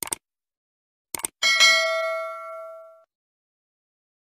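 Sound effects of an animated subscribe button: two short pairs of clicks, then a bright bell ding about a second and a half in that rings out and fades over about a second and a half.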